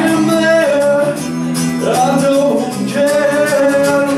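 Live band music: a man singing long held notes over guitar and bass guitar, with one rising slide into a note about halfway through.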